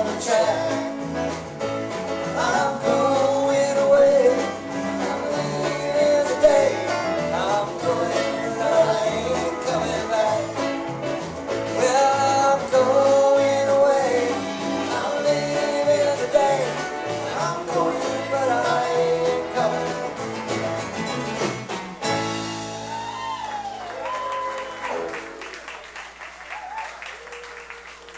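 Live band playing a bluegrass-country song on acoustic guitars, keyboard, bass and drums. About 22 seconds in the band stops on a final chord, which rings out with a few bent notes and fades.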